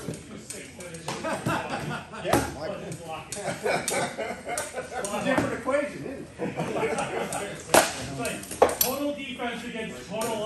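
Sparring practice-sword blows (taped rattan) striking shields and armour: a sharp crack a couple of seconds in, then two louder cracks close together near the end. Voices talk throughout.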